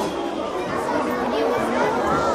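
Many children's voices chattering at once, a crowd with no single speaker standing out.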